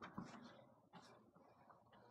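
Near silence: small-room tone, with a faint tick about a second in.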